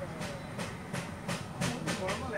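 Light clicks or ticks, about three a second at uneven spacing, over a low steady background hum.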